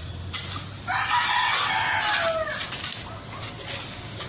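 A rooster crowing once, starting about a second in: one long call lasting nearly two seconds that drops in pitch at the end.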